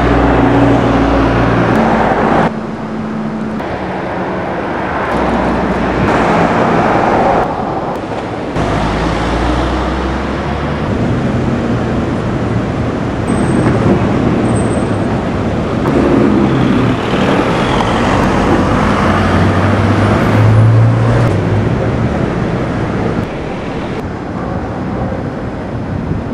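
Road traffic noise: vehicle engines running and tyres on the road. The sound shifts abruptly a few times in the first nine seconds.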